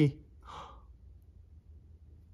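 A man's short breathy sigh about half a second in.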